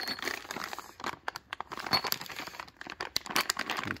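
Clear plastic bags of mounting hardware crinkling and crackling as they are handled, with irregular sharp clicks throughout.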